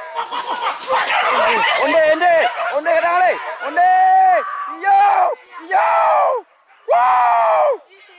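Several wild boar hunters shouting long, wordless hunting calls. The calls overlap in a jumble for the first few seconds, then come one at a time, each about half a second to a second long, rising and then falling in pitch.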